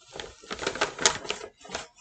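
Tissue paper crinkling and rustling as it is pulled out of a shopping bag: a run of irregular crackles.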